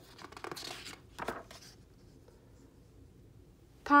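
A page of a hardcover picture book being turned by hand: paper rustling over about the first two seconds, with a sharper swish just over a second in.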